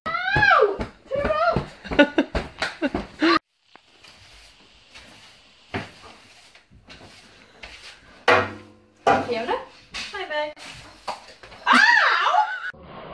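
Children's excited squeals and laughter with short thumps during a pillow fight, for about the first three and a half seconds. Then, after a sudden cut, a quiet room with one sharp click and a few short vocal sounds.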